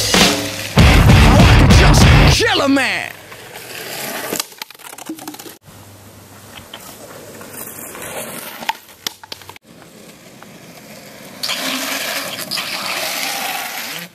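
Loud music with a heavy beat that cuts off about two seconds in, giving way to quieter outdoor sound with a few voices. Near the end comes a steady rumbling hiss of longboard wheels rolling on asphalt.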